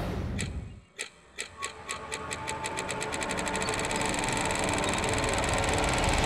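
A run of sharp strikes beginning about a second in, speeding up steadily and growing louder until they merge into a continuous buzzing rattle.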